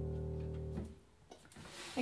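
Final chord of a song on a keyboard, held steady and then cut off abruptly under a second in. Faint rustling and microphone handling noise follow.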